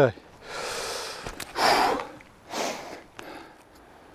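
A man breathing hard, with three heavy, breathy exhalations in about three seconds, the loudest near the middle.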